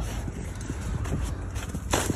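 Footsteps on snowy, leaf-littered ground over a steady low rumble, with a sharper knock near the end.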